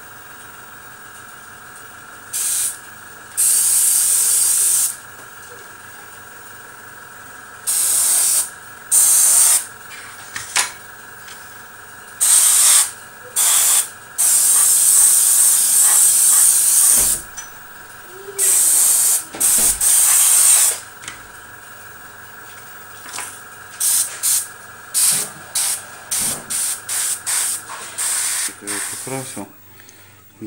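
Airbrush spraying paint in repeated bursts of hiss, some a second or two long, then many short quick bursts near the end. Under it the airbrush compressor runs with a steady hum, which stops shortly before the end.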